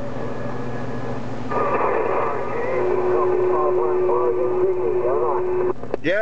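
Uniden HR2510 radio's speaker hissing with static and a low hum, then about one and a half seconds in another station's voice comes through, thin and garbled, with a steady whistle laid over it from about halfway. The incoming signal cuts off just before the end.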